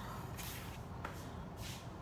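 Soft rustling and shuffling of a person moving about close to the microphone, with about three brief scuffs.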